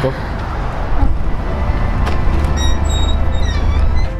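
Outdoor street noise with a strong low rumble and cars in the background. In the second half come a few brief high ringing tones.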